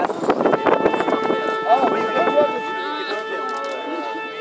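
A steady held tone with several overtones begins about half a second in and holds through the rest, with people's voices talking close by.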